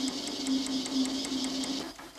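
Eckold Kraftformer sheet-metal forming machine running: a steady hum with a rapid, even ticking of its tool strokes, several a second, which cuts off just before the end.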